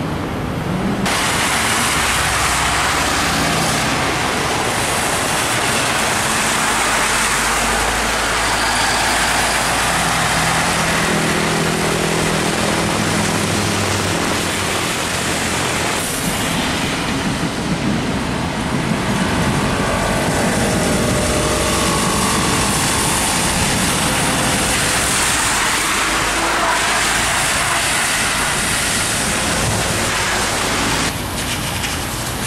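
MAN single-deck city buses running in traffic: one bus drives off, then, about halfway through, another pulls away from a stop on a wet road, its engine note rising as it accelerates, over the hiss of tyres and road noise.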